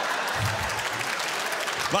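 Theatre audience laughing and applauding after a punchline.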